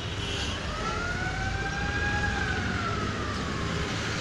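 A single siren wail, one smooth tone that rises slowly from about a second in and falls away near the end, over a steady low rumble of street traffic.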